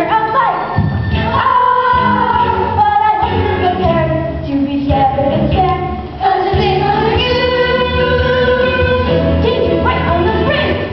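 A children's chorus sings a show tune with musical accompaniment, holding long notes, with a brief drop in loudness just past halfway.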